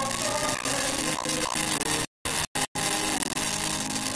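Loud hiss of static swamping a choir's singing, which is only faintly heard beneath it; the sound drops out to dead silence three times about halfway through. An audio fault in the recording.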